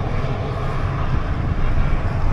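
Wind rushing over the microphone of a camera on a moving bicycle: a steady low rumble with no breaks.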